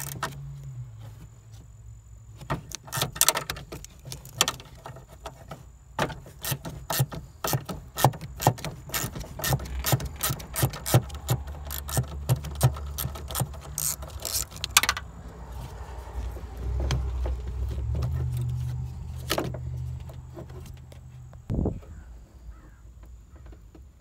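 A wrench ratcheting in quick runs of metallic clicks as the power antenna motor's mounting bolts are backed out, the clicks thinning out after about fifteen seconds. A low hum swells in the background for several seconds near the end.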